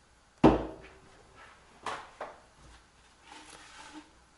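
A single loud knock with a short hollow ring about half a second in, then two lighter knocks around two seconds in, and light rustling near the end.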